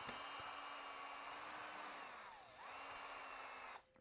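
Cordless drill-driver running steadily, backing hinge screws out of a door. Its motor pitch dips briefly just past halfway and comes back up, and it stops just before the end.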